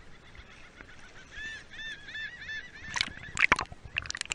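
Gulls calling overhead: a quick run of about six short, arched cries. Near the end, loud splashing and water noise as the camera breaks the surface and dips under.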